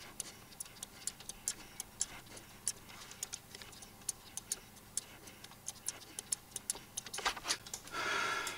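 Faint, irregular small clicks from a computer mouse, its buttons and scroll wheel, a few a second and coming thicker near the end.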